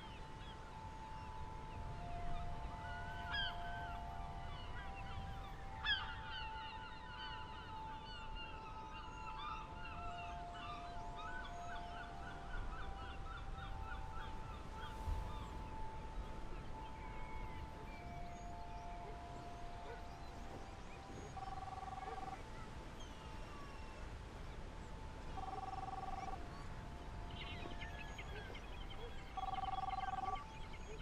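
Birds calling in chirps and short gliding notes, busiest in the first half, over a low steady rumble of wind and surf. Soft held musical notes sound underneath throughout.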